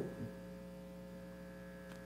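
Faint, steady electrical mains hum: a low buzz with a stack of even overtones, unchanging throughout.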